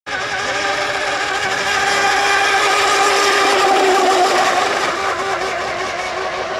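Electric radio-controlled 1/10-scale racing boats running at speed, their motors giving a steady high-pitched whine that swells about three to four seconds in and eases a little toward the end.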